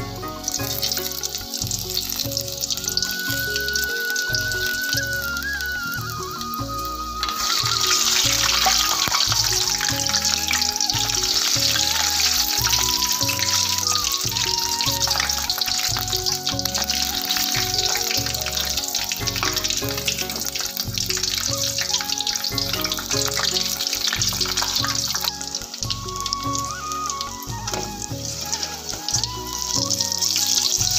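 Batter-coated green chilli pakoras deep-frying in hot oil, a steady sizzle that turns louder about seven seconds in. Background music with a melody and beat plays throughout.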